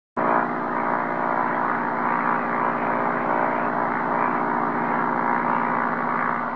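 Single-engine propeller airplane in flight, its piston engine running at a steady, even drone that cuts in abruptly at the very start.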